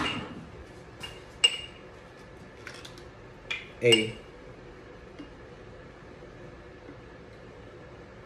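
Glassware clinking and knocking a few times as bottles and a measuring cup are handled, the sharpest, ringing clink about a second and a half in.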